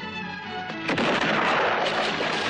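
Film score music, cut into about a second in by a sudden loud bang. The bang has a long rushing decay that swamps the music for about two seconds before the score returns.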